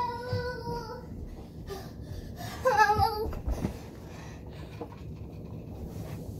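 A person's high-pitched, drawn-out whine that fades out about a second in, then a shorter wavering cry about three seconds in: pained moaning from the burn of an extremely hot chili chip.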